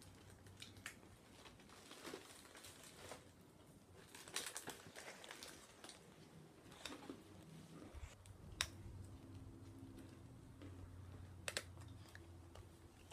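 Faint, scattered plastic clicks and crinkles as a small toy capsule and its wrapping are handled and worked open by hand.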